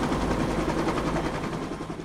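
Cartoon helicopter's rotor sound effect, a steady rapid chopping that fades out toward the end.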